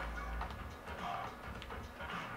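Faint small clicks and light handling of a turntable headshell being fitted onto the tone arm, over a low steady hum.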